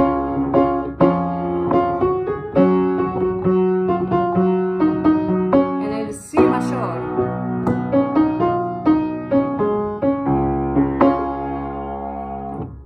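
Upright piano playing a run of sustained chords in C sharp major: the cadence moves to the fourth chord, F sharp, then takes a turn that resolves.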